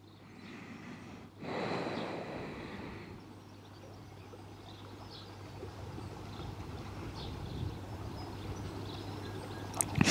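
Quiet outdoor ambience: a soft rush of noise that swells about a second and a half in and fades out by three seconds, over a steady low hum, with a few faint high chirps.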